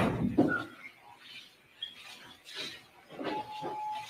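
Movement in a courtroom: a loud bump right at the start, then scattered knocks and rustling as people shift about, with a faint thin tone near the end.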